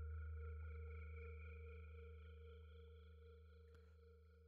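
A sustained, bell-like ringing tone made up of several pitches, slowly dying away.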